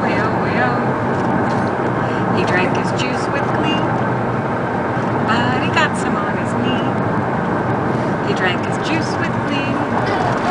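Steady road and engine noise inside a moving car's cabin, with a baby's short high-pitched coos and squeals a few times.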